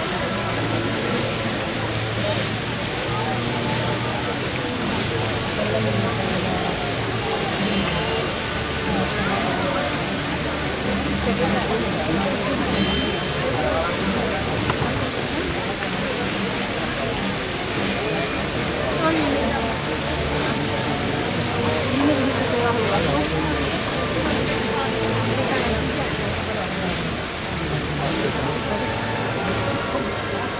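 Fountain water splashing steadily over a murmur of crowd voices, with low sustained music notes underneath.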